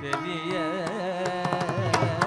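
Carnatic classical music: a sung melody with sliding ornaments over a steady drone, accompanied by irregular strokes on mridangam and ghatam.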